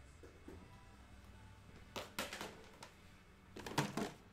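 Hard objects being handled and set down on a desk: two short bursts of clicks and clatter, about two seconds in and again near the end, the second the loudest.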